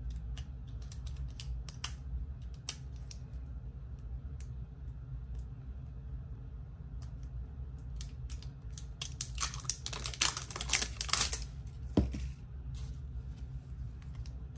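Plastic wrapping being handled and peeled off small Stickles Gel bottles: scattered small clicks and ticks, a burst of crinkling plastic about ten seconds in, then a single knock as a bottle is set down.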